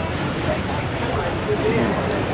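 Busy street ambience: a steady wash of passing traffic under the indistinct chatter of people walking by.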